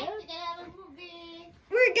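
A girl's voice singing a short phrase of long held notes, the pitch steady with a small dip, before speech starts near the end.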